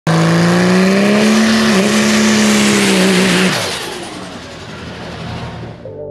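Drag-race truck's Cummins inline-six diesel, built to about 2,000 hp, held at high, nearly steady revs. After about three and a half seconds the pitch drops and the sound fades into a dwindling roar as the truck pulls away down the strip.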